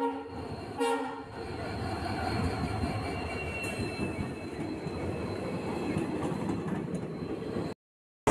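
Diesel locomotive sounding two short horn blasts as it draws into the platform. After that comes the steady rumble of the engine and wheels as the train rolls past.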